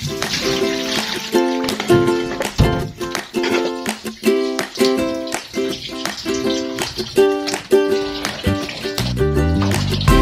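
Background music: an upbeat tune of short plucked notes at a steady beat, with low bass notes joining near the end.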